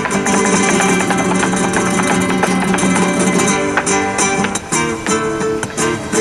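Live flamenco played on an acoustic guitar: fast plucked runs and strums, with sharp percussive strokes among the notes.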